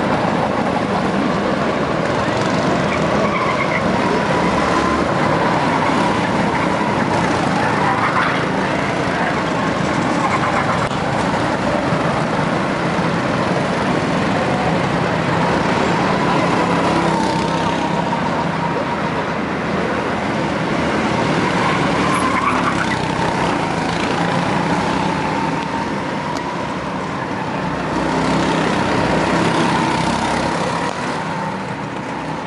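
Go-kart engines running as karts lap the circuit: a steady high engine whine that wavers with throttle and rises in pitch about eight seconds in and again a little past twenty seconds.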